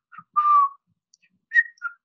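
A man whistling a slow five-note tune by mouth, his own rendering of the phantom whistle he describes. The notes are short and separate, with a longer held note about half a second in and a higher note near the end.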